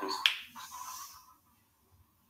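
A single sharp click about a quarter second in, followed by a faint hum that fades away within about a second.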